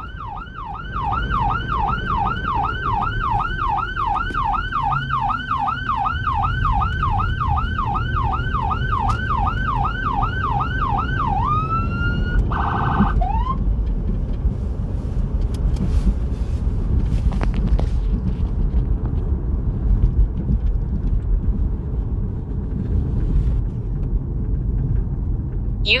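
Whelen 295SL100 electronic siren, heard from inside the vehicle, sounding a fast yelp of about three sweeps a second. About halfway through it switches briefly to a different tone and then cuts off, leaving the engine and tyre noise of the moving vehicle.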